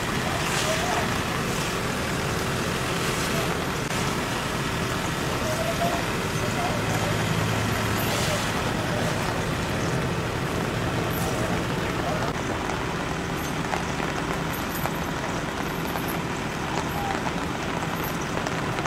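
Steady outdoor din of road traffic with indistinct voices in the background and no distinct events.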